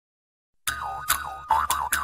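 Springy cartoon boing sound effects: about five wobbling, bouncing tones in quick succession, starting about two-thirds of a second in after silence.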